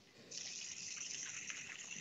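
Oil sizzling as it is poured into a hot stainless-steel skillet of searing filet mignon steaks and mushrooms. A steady hiss starts about a third of a second in.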